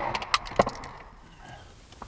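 Spent brass casings from a Glock pistol landing and clinking in a pickup truck's cab: a few sharp metallic ticks with a brief high ring in the first second or so, then dying away to quiet cab noise.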